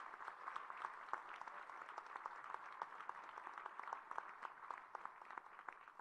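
An audience applauding: many hands clapping steadily and fairly faintly, without a break.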